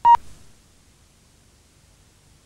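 A single short electronic beep, a steady tone of about 1 kHz lasting a fraction of a second at the start, followed by faint hiss.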